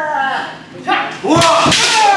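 Kendo kiai: a long shout tailing off, then another shout mixed with sharp smacks of bamboo shinai strikes and stamping feet on the wooden dojo floor. There is one crack about a second in, and several quick impacts near the end.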